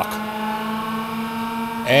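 Winmill pitching machine running: a steady hum made of several unchanging tones that holds level throughout.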